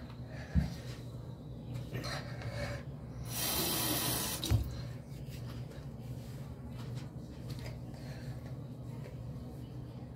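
Tap water running into a bathroom sink, with a louder rush of water for about a second a little past the middle. There are two short knocks, one near the start and one after the rush.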